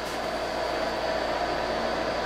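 Steady hum and hiss of a portable air-conditioning unit running in a small room, with a faint constant tone and no change in level.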